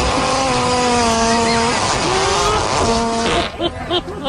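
Fart sounds: a long steady buzz lasting about a second and a half, then a shorter buzz that bends upward, and a brief one about three seconds in.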